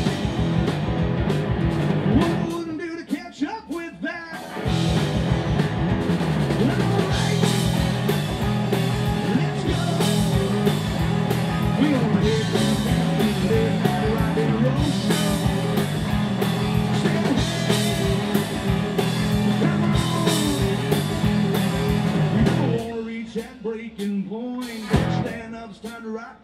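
Live rock band (three electric guitars, bass guitar and drum kit) playing an instrumental passage. The band drops back briefly about two seconds in, comes back in full about four and a half seconds in, and thins out into broken, stop-start playing for the last few seconds.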